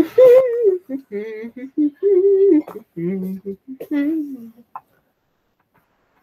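A voice singing a short melody in a few held notes with small pitch glides, stopping about three-quarters of the way through.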